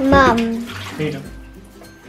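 A child's short wordless vocal sound in the first half-second, followed by faint room noise.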